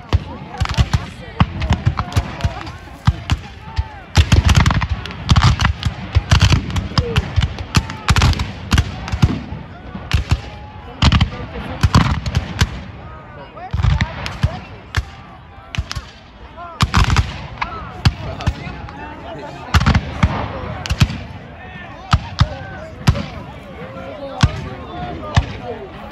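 Black-powder rifle-muskets firing blank charges: many irregular shots and ragged volleys throughout, some heavier reports among them, over men shouting.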